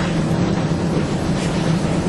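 Steady hum and hiss of room background noise, with a constant low drone and no distinct events.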